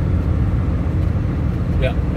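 Steady low rumble of a car driving at motorway speed, heard inside the cabin: engine and tyre noise.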